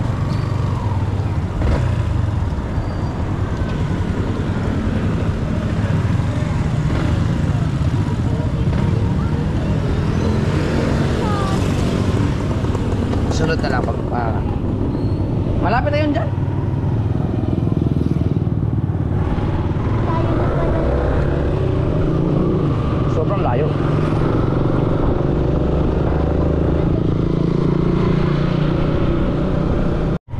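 Motorcycle engine running steadily while riding, a constant low rumble mixed with road noise.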